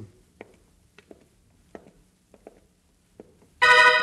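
Faint footsteps sound effect, roughly one step every two-thirds of a second. Near the end a loud, sudden dramatic music sting cuts in: a held keyboard chord that rings on.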